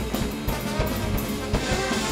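Jazz big band playing a fast piece live, with the drum kit busy under trombone, trumpet and saxophones.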